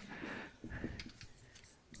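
Faint short strokes of a marker pen writing letters on a whiteboard.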